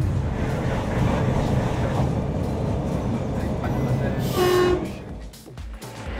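Heathrow Express train running, a steady low rumble, then a short electronic tone with a hiss about four seconds in as the carriage doors open.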